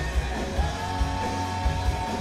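Hard rock band playing live: electric guitar, bass and drums, with regular low beats and a long held note coming in about half a second in.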